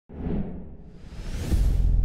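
Logo intro sound effect: a brief low note at the start, then a rising whoosh with a high tone gliding upward. It builds into a deep, steady bass about one and a half seconds in.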